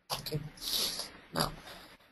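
A person's throat and nose noises close to the microphone: a longer noisy burst followed by a short sharp one about one and a half seconds in.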